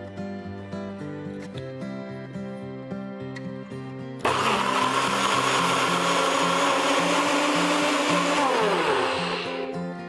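Personal blender grinding soaked peanuts with water into peanut milk: it starts suddenly about four seconds in, runs loud and steady, then its pitch falls as the motor winds down near the end. Background music plays throughout.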